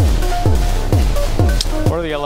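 Techno loop from a Reaktor software modular patch: a kick drum with a falling pitch sweep on every beat, about two a second, with short pitched synth blips between the beats and a brief hi-hat hiss near the end.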